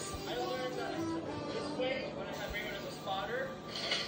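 Indistinct voices over background music, with no clear words.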